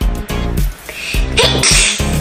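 A child sneezes once near the end, a short noisy burst, over background music with a steady beat.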